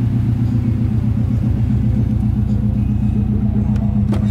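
Car engine idling, a steady, loud, low drone with an even pulse.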